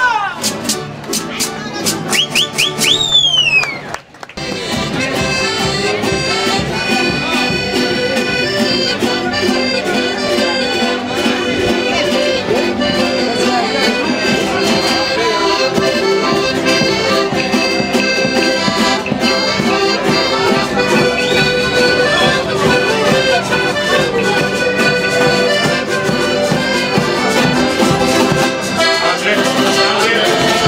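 A Canarian folk string group of guitars, timples and lute-type instruments playing traditional music, the lutes holding long notes in tremolo. Voices and a high, gliding cry come in the first few seconds, followed by a short break about four seconds in before the playing settles into a steady run.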